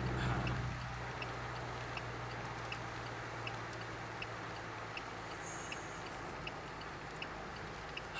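Inside a moving car's cabin: steady engine and road hum, with the indicator relay ticking evenly about once every three-quarters of a second.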